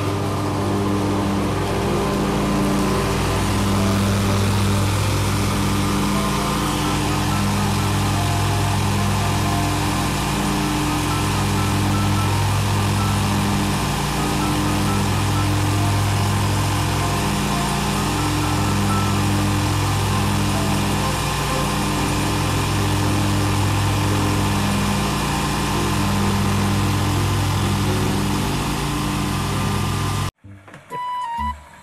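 Zero-turn riding lawn mower engine running steadily, with a low throb that swells and eases about every two seconds.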